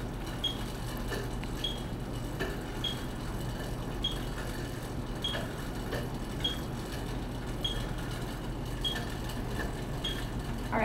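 Electronic metronome beeping at 50 beats per minute, a short high beep a little more than once a second, pacing the pedalling cadence. A steady low hum runs underneath.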